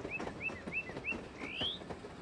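Birdsong sound effect: a quick run of short rising chirps, about three a second, then one longer rising chirp about one and a half seconds in.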